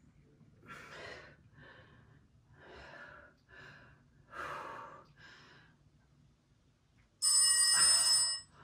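A woman breathing hard in short, quick puffs while she holds her arms out and circles them, worn out near the end of the set. About seven seconds in, a loud bell-like timer tone rings for just over a second, signalling the end of the work interval.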